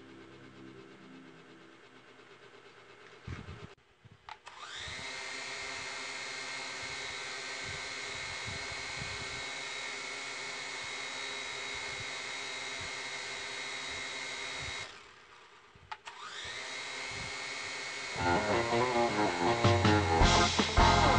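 An L701 toy quadcopter's small electric motors spin up with a rising whine, run steadily for about ten seconds, stop, then spin up and run again. Louder music comes in near the end.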